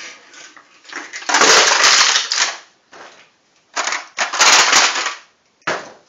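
Aluminium beer cans crushing and crumpling as the hinged wooden ends of a homemade lever can crusher fold them in: two long bouts of crushing about a second and a half each, then a short noise near the end.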